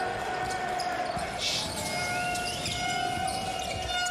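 Basketball arena sound during live play: a steady crowd murmur with court sounds such as a ball bouncing and a few brief high squeaks.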